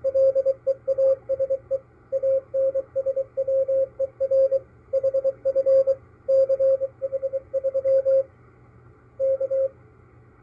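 Morse code from the maritime coast station KPH, heard through an SDR receiver in upper sideband: one steady tone keyed on and off in dots and dashes over a faint hiss of band noise. The decoded text of this part of its call reads '...PLEASE ANSWER HF CH3'. The keying pauses about two-thirds of the way through, sends one last short group and stops shortly before the end.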